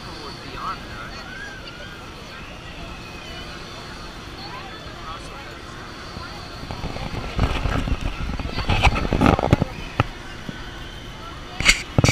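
Outdoor amusement-park ambience with voices in the first couple of seconds. In the second half come loud, rough rushes of noise, and a sharp knock just before the end.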